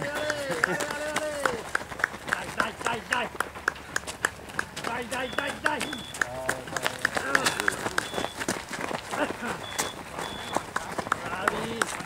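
Running footsteps of several runners jogging past on a gravel road, a quick run of crunching steps, with a voice calling out cheers near the start and now and then after. Short high beeps, mostly in pairs, sound a few times in the middle.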